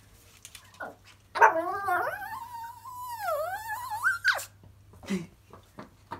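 A tiny Yorkshire terrier gives one long, wavering whining call of about three seconds. It rises, dips in the middle and climbs again at the end, with a short squeak before it and after it. This is her excited response to hearing the word "walkies".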